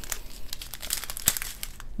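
Small resealable plastic bag of diamond-painting drills crinkling as it is picked up and handled, with small irregular crackles throughout.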